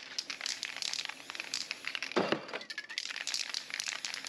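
Aerosol spray paint cans hissing in short, uneven bursts as paint is sprayed onto paper, with a fuller, louder burst about two seconds in.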